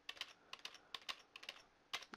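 Rapid, faint typing on a computer keyboard: quick keystrokes, several a second, as a run of filler letters is typed in.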